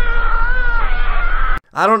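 Eerie droning meme soundtrack: a high, slightly wavering tone over a deep buzzing hum, pulsing quickly and evenly, which cuts off abruptly about a second and a half in. A man's voice starts right after.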